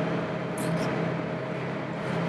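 Steady hum of a commercial kitchen's ventilation, with one short scrape of a vegetable peeler on a cucumber about half a second in.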